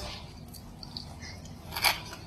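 Faint chewing of a crunchy shredded potato snack (kentang mustofa), with one sharper crunch near the end.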